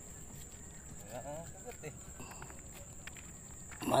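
Quiet outdoor background: a faint distant voice about a second in, then a few light clicks and rustles, over a steady thin high hiss.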